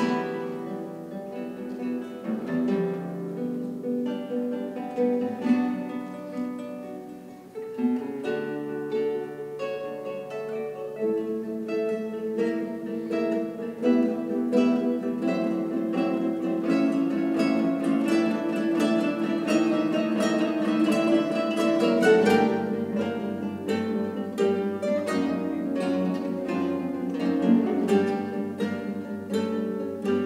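A large ensemble of classical guitars playing a piece together, many plucked notes at once. The playing drops quieter about seven seconds in, then builds louder and fuller, with low bass notes joining about two-thirds of the way through.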